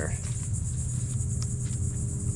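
Steady high-pitched chorus of insects, with a low rumble underneath and a few faint ticks.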